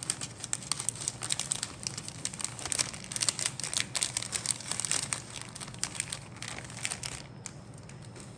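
Clear plastic kit bag crinkling and crackling as grey plastic sprues inside it are handled, with irregular crackles that ease off about seven seconds in.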